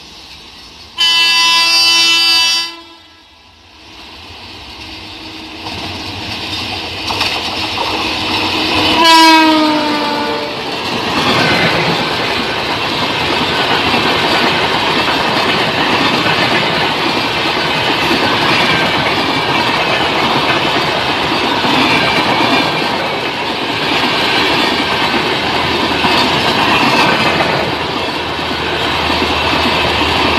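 Express passenger train passing at speed close by: a locomotive horn sounds a steady blast about a second in, then as the train approaches a second horn blast falls in pitch as the locomotive goes by. The coaches then run past with loud wheel clatter and rumble on the rails for the rest of the time.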